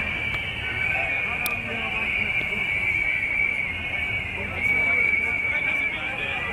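Street protest march crowd: a dense mix of chatter and noise from many marchers, with a steady, slightly wavering high-pitched whine running through it.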